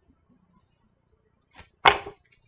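Near silence, then one short, sharp whoosh near the end.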